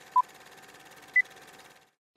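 Film countdown leader sound effect: two short electronic beeps a second apart, the second one higher in pitch, over a faint steady hiss.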